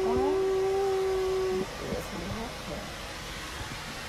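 A person's voice holding one long, steady sung note, which cuts off about one and a half seconds in. Quieter voice sounds follow.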